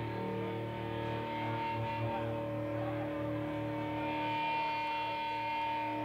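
Electric guitar ringing through an amplifier in a live rock recording: steady sustained tones held over a low hum, with no strumming yet.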